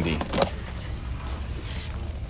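Plastic blister-packed toy figures clinking and rattling on metal pegboard hooks as they are handled, over a low steady hum.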